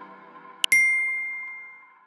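A short click, then a single bright bell-like ding that rings out and fades over about a second: the sound effect for the animated Subscribe button being clicked. It plays over the fading tail of a synth music chord.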